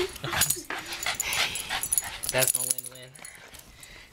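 Excited West Highland white terriers greeting someone up close, making a quick run of short sniffing, licking and whimpering noises. About two and a half seconds in, a brief low drawn-out human voice sounds.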